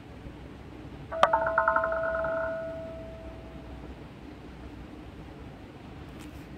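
A short electronic chime from the online roulette game: a sharp click about a second in, then a ringing, bell-like tone with a fluttering upper part, fading out over about two and a half seconds above a steady low hum.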